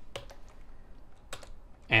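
A few separate keystrokes on a computer keyboard as the last letter of a command is typed and Enter is pressed.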